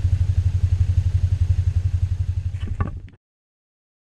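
Motorcycle engine running with an even low pulse, then a brief clatter, and the sound cuts off suddenly about three seconds in.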